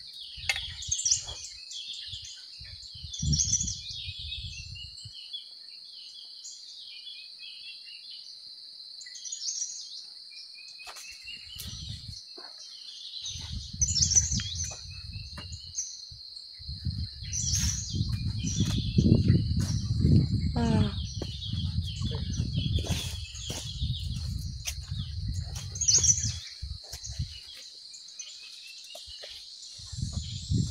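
Many small birds chirping and calling in the trees over a steady high insect drone. Through the middle and later part, a louder low rumble of noise comes in and fades again.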